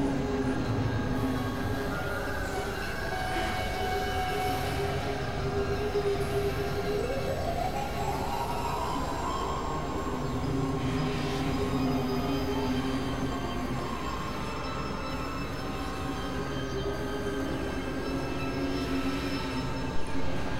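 Dense layered experimental drone collage: many steady tones held together over a noisy low rumble, with one tone sliding upward about seven seconds in.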